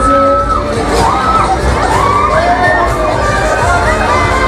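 Riders on a Loop Fighter swing ride screaming, several long, high screams overlapping one another, over the fairground's noise.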